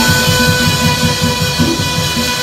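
Saxophone holding one long, steady note over a tropical beat with a pulsing bass line.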